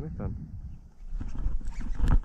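A man's short wordless grunt at the start, of the kind an angler makes while straining against a hooked fish, then a low rumble from about a second in.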